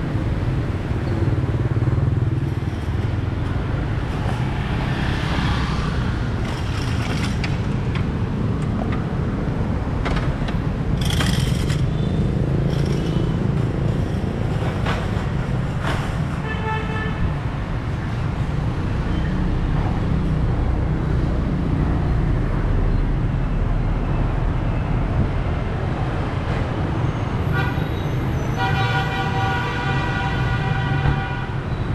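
City street traffic: a steady rumble of motorbikes and cars passing, with a short horn toot about halfway through. Near the end comes a repeated pitched beeping, like a horn sounding several times.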